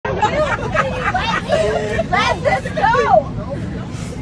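Several people talking loudly over one another in an airliner cabin, with a steady low hum underneath.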